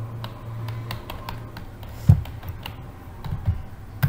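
Scattered clicks of a computer keyboard being worked by hand, with one louder thump about halfway through and a few softer knocks near the end.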